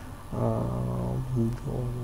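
A man's drawn-out hesitation sound, one steady hum-like vowel at an even low pitch held for about a second, then a short second one.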